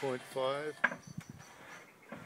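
A man's voice says "two point five", then one sharp click followed by several light knocks.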